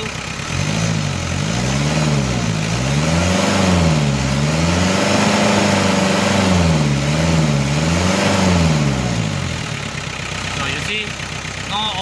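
Mitsubishi 4D56 2.5-litre four-cylinder diesel, at operating temperature, being revved up from idle in several swells with a longer held rev in the middle, then dropping back to idle near the end. This is a blow-by check with the dipstick out, and no oil or smoke comes from the dipstick tube, which is normal.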